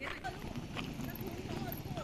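Faint background voices in fragments over a low murmur, with a few sharp clicks or taps.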